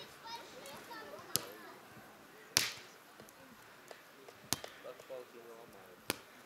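Three sharp hits of hands and forearms on a volleyball during a rally, a second or two apart, the second the loudest. Faint voices of players sound underneath.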